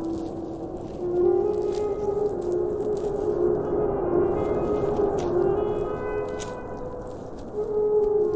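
Alto saxophone playing slow, long held notes that bend slightly in pitch, over a steady hiss; a louder new note comes in near the end.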